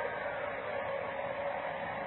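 Steady background hiss of an old lecture recording with a faint steady hum, heard during a pause in the talk.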